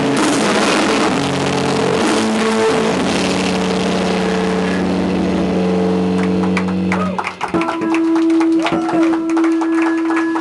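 Live emo/post-punk band with electric guitars and drums playing loud, held chords, which break off about seven seconds in. A single steady note then rings on from the amps, with a few clicks.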